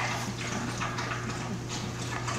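A litter of puppies scuffling and playing on blankets: an irregular patter of small paw and body noises over a steady low hum.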